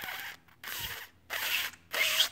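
A person blowing air hard past the tip of the tongue held against the teeth, with the lower lip in an F shape: four short breathy hisses in quick succession with no clear whistle tone yet. This is the practice stage of learning to whistle loudly without fingers.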